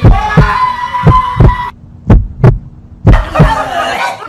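Loud heartbeat sound effect: low double thumps, one lub-dub pair about every second, laid over the prank of pulling a bloody heart from a man's chest.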